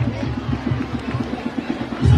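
Street brass band with a sousaphone playing in the middle of a crowd, mixed with the crowd's chatter and shouts.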